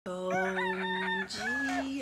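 A woman's voice giving a long, drawn-out sung call: one held note, then a second note that slides upward.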